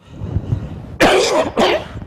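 An elderly man coughs twice in quick succession, about a second in, both coughs loud and harsh.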